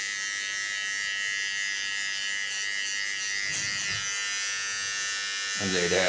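Steady high-pitched electric buzz of a small motor running without a break, with a short soft low sound about three and a half seconds in.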